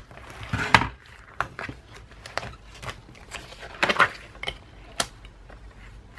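A ring-bound planner being handled as a freshly punched paper page is fitted onto its metal rings: paper rustling and a series of sharp clicks and taps, the loudest about a second in.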